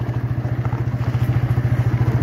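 TVS Apache motorcycle's single-cylinder engine running steadily while riding, its firing pulses even and rapid.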